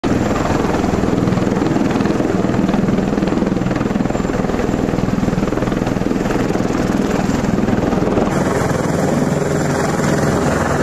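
MV-22B Osprey tiltrotor in helicopter mode, its two proprotors and turboshaft engines running loud and steady with a rapid rotor beat as it hovers just off the runway. The sound changes abruptly about eight seconds in as the shot cuts to an Osprey in flight.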